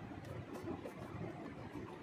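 Chopped onion and cumin seeds frying in hot oil in a kadai, a faint steady sizzle, with light stirring by a spatula.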